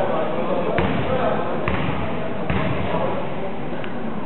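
A basketball bounced on a wooden hall floor four times, a little under a second apart, each bounce ringing in the large hall, typical of a shooter dribbling before a free throw. A background murmur of players' and spectators' voices runs throughout.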